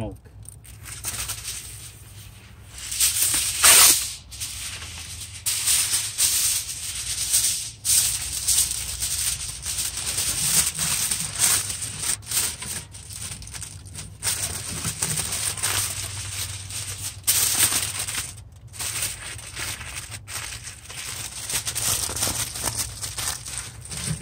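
Aluminum foil crinkling and rustling in irregular bursts as a rack of ribs is folded and wrapped tightly in it, loudest about four seconds in.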